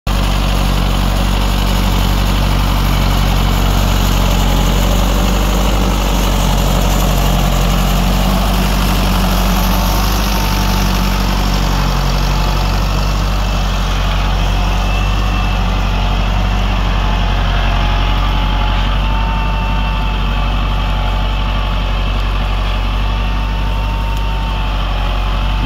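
Lamborghini 874-90T tractor's diesel engine running steadily under load as it pulls a plough through wet, muddy soil.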